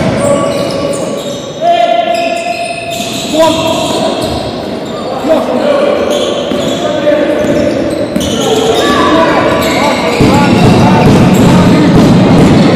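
Basketball being dribbled on a hardwood gym floor, with sneakers squeaking on the court and players calling out, echoing in a large sports hall. The sound gets louder and busier near the end.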